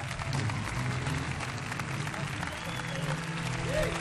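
Studio audience applauding over a short stretch of music with steady low held notes.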